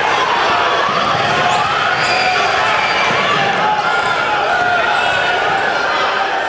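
Basketball being dribbled on a gym floor during a game, with voices of players and spectators calling out throughout.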